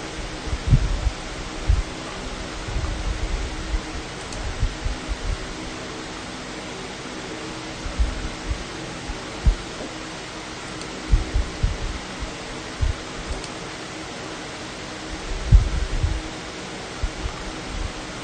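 Steady background hiss with a faint hum from the stream's audio, broken every second or two by soft low bumps and thumps.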